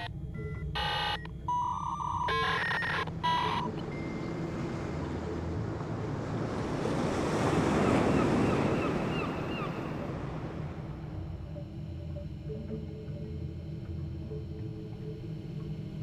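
Sea surf, a rushing wash that swells up to a peak about halfway through and then fades away. In the first few seconds there are three short electronic beeps or tones.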